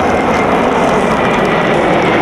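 Jet engines of a large formation of fighter jets flying overhead: a steady, loud rushing noise.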